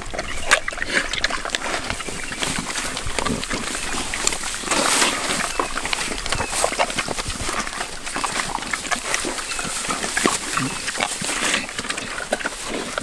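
Red wattle pigs feeding as a group: a steady run of chewing, smacking and snuffling, full of small crackling clicks.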